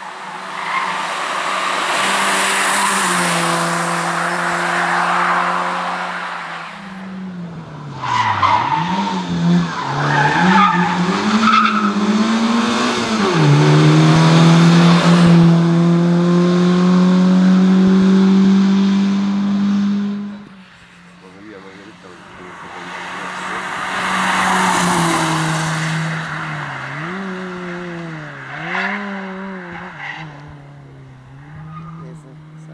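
Suzuki Swift rally car's engine revving hard through tight corners, its pitch rising under acceleration and dropping sharply on downshifts and braking, with tyre noise. The sound changes abruptly twice as the shot changes from one corner to the next.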